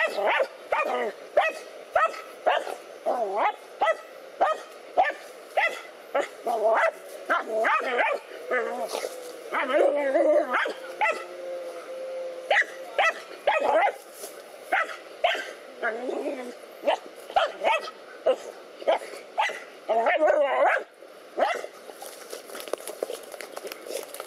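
Dogs barking in short, quick barks, about two a second, as they attack a snake.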